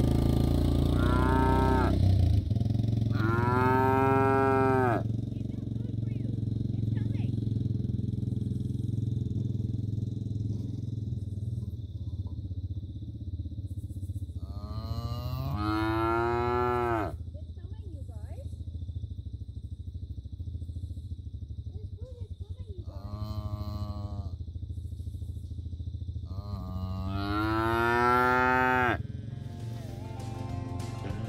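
Bottle calves bawling for hay: five drawn-out moos, each rising and then falling in pitch, spaced several seconds apart, the last one long and loud. A low steady hum runs underneath and is strongest in the first couple of seconds.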